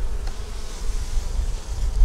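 Honey bees buzzing in a steady hum over an open hive box while granulated sugar is poured onto paper over the frames as dry winter feed. Wind rumbles on the microphone underneath.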